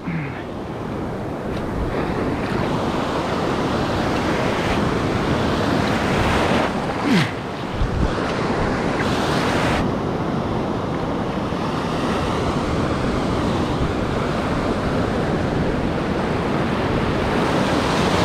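Ocean surf washing through the shallows around a wader's legs: a steady rushing of breaking water and foam.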